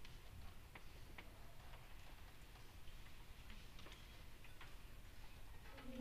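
Near silence with faint, irregular clicks, then a choir begins singing right at the very end.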